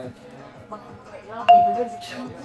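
A single bright bell-like chime strikes about one and a half seconds in, holding one clear pitch and fading, after some low murmured voice sounds.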